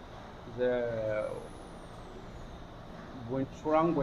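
A man's voice briefly, then steady low background hum and noise with a faint high whine falling slowly in pitch over about a second and a half; speech resumes near the end.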